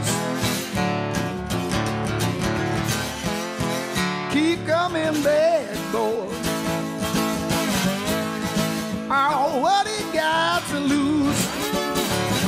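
Solo acoustic guitar playing an instrumental break in a blues song: picked lead lines over bass notes, some of them sliding up and down in pitch.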